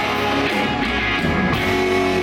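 Live rock band playing an instrumental passage: electric guitars over a drum kit, running steadily.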